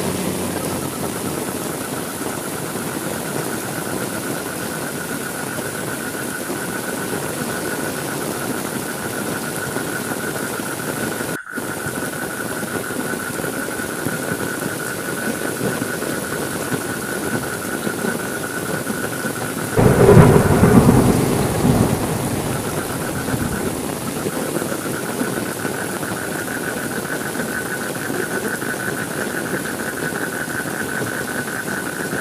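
Steady heavy rain, with a sudden loud clap of thunder about two-thirds of the way in that rumbles and fades over two or three seconds. A thin steady high tone runs under the rain.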